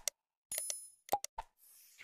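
Sound effects of an animated subscribe-button graphic: short mouse-click pops, a brief bell-like ding about half a second in, more pops just after a second, and a soft whoosh near the end.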